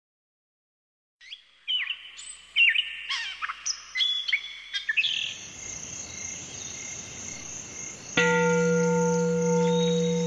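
Birds chirping and twittering in quick short calls for a few seconds. Then a steady high insect-like trill continues, and about eight seconds in a sustained low pitched tone comes in and holds.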